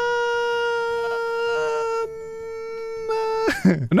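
A man's long, held, high-pitched "ummm", sung out on one steady note that sinks slightly. It turns softer about two seconds in and breaks off half a second before the end.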